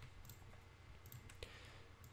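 Near silence: faint room hum with a click or two of a computer mouse.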